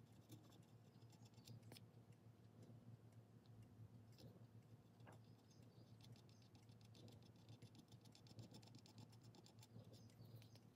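Near silence: a steady low hum with faint, scattered small ticks and clicks, thickening into a fine rapid ticking in the second half.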